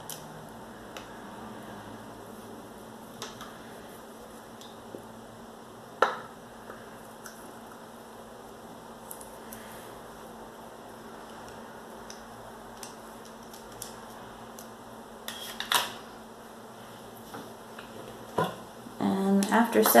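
Quiet room tone broken by a few sharp small clicks and taps as a plastic acrylic paint tube and a plastic cup are handled, the loudest about six seconds in and a cluster near sixteen seconds. A woman starts speaking just before the end.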